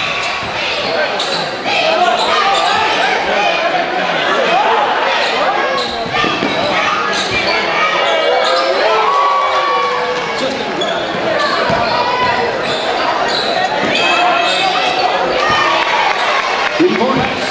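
Basketball dribbled and bouncing on a gym's hardwood floor during live play, with a steady mix of crowd and player voices echoing in the large hall.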